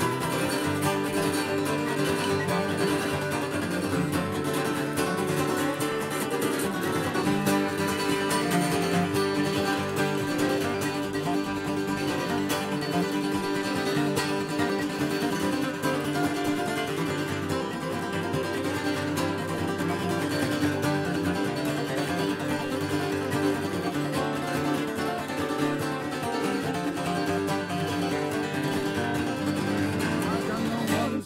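Instrumental acoustic guitar music playing steadily, with no singing.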